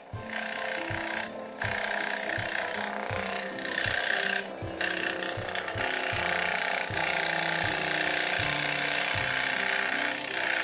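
Scroll saw running and cutting through plywood: a steady hiss that drops out briefly twice. Background music plays throughout.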